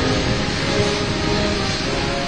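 A military band playing a national anthem, heard as faint held notes under a loud, steady rushing noise.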